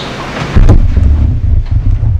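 Microphone handling noise: a loud, low rumble that starts suddenly about half a second in.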